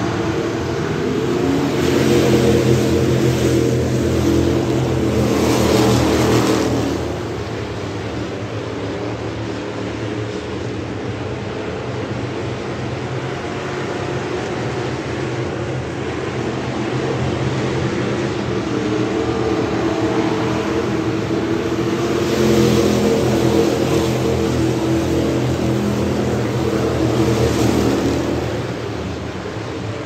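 A pack of Thunder Bomber stock cars racing, their engines running hard. The sound swells loud twice as the field comes by, about two seconds in and again past twenty seconds.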